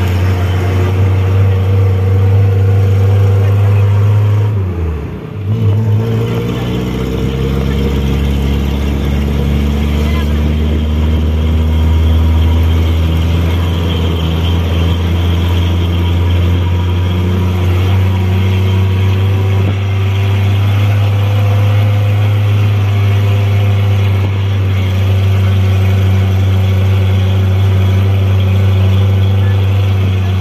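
Engine of an odong-odong tourist shuttle running under load as it carries passengers up a hill road. About five seconds in the engine note falls away and dips in level, like a gear change, then picks up and runs steadily again.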